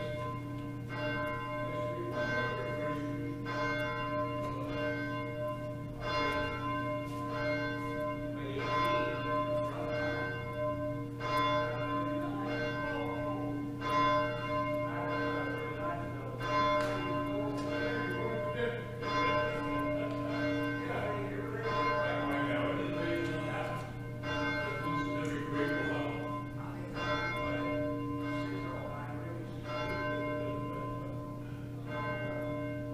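Church bells ringing, struck again and again about once a second, each stroke ringing on and overlapping the next.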